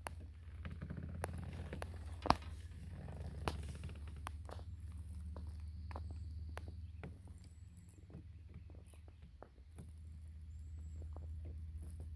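Low steady rumble with scattered small clicks and knocks, and one sharper knock about two seconds in: handling noise from a camera being panned around from a kayak on calm water.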